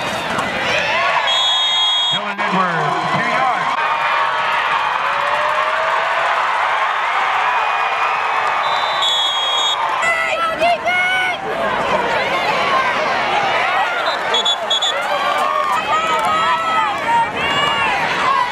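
Football crowd: many voices yelling and cheering at once from the stands. Three short, high, steady whistle blasts cut through the crowd, about a second in, around nine seconds in and near fifteen seconds in.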